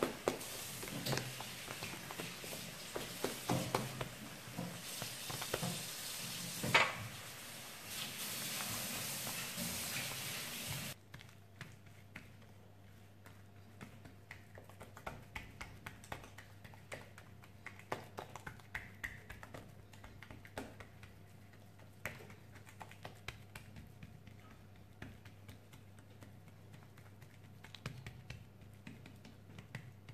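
Hands pressing and patting a sheet of semolina meloui dough flat on a countertop: scattered soft taps and pats. A steady hiss lies under the first ten seconds or so and cuts off suddenly, leaving faint taps over a low hum.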